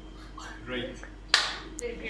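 A single sharp slap of hands, like a clap, about two-thirds of the way through, the loudest sound here, with voices before and after it.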